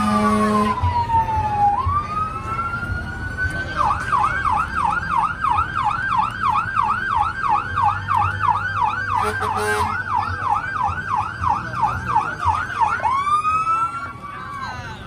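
Fire engine's electronic siren: a slow wail falling then rising, switching about four seconds in to a fast yelp of about three cycles a second. A short horn blast sounds at the start.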